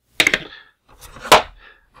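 Two sharp clacks of hard plastic about a second apart, the second louder, as the toy's parts are handled and the hinged front panel door on the 1988 G.I. Joe Cobra BUGG's plastic hull is swung shut.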